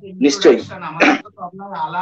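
A man talking into a microphone.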